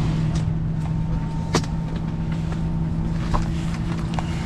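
Steady airliner cabin hum with a constant low drone, while passengers are up in the aisle with their bags; a few light clicks and knocks from bags and seats, the sharpest about a second and a half in.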